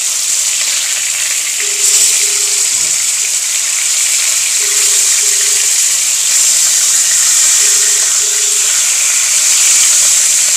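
Tilapia pieces frying in cooking oil in a nonstick pan: a steady sizzle that gets a little louder about two seconds in. A faint double beep repeats about every three seconds underneath it.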